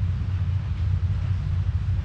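A steady low background hum, with no other sound standing out.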